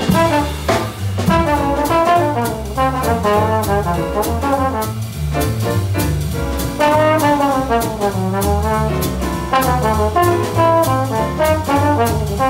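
A small jazz combo playing: a trombone runs a busy melodic line over upright bass, piano and drums with regular cymbal strikes.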